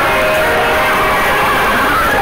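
Animated cartoon soundtrack: a loud, steady rushing sound effect with music and a held tone under it.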